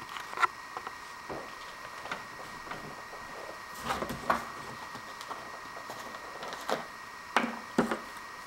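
A few light clicks and knocks of small objects being handled and set down on a wooden counter, among them a plastic bottle cap, over a faint steady room hum.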